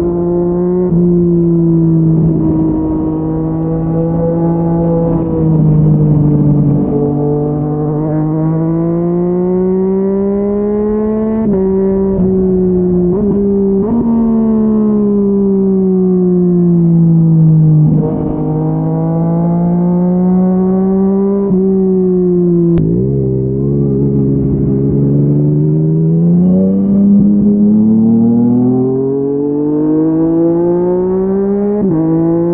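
Yamaha MT-09's three-cylinder engine through a Yoshimura R55 slip-on exhaust, heard from the rider's seat while riding. The revs climb and fall with the throttle, with sudden drops in pitch at gear changes about a third of the way in and again past two-thirds, each followed by a steady climb.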